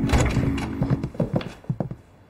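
Quick hard-soled footsteps on a hard floor, a run of knocks several a second that grows fainter near the end, following a thud at the start.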